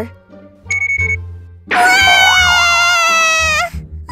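A short high beep, then a baby's loud wail, 'WAHH!', one long cry of about two seconds over soft background music: the baby waking up crying again.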